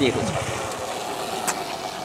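A motor vehicle's engine running, a steady low rumble under the tail end of a man's voice, with a faint click about a second and a half in.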